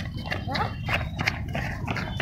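Footsteps of a group of runners jogging on concrete: many quick, overlapping footfalls.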